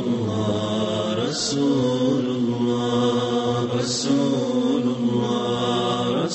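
Unaccompanied vocal nasheed: several voices chanting long held notes that shift in pitch every second or so, with a short hiss about every two and a half seconds.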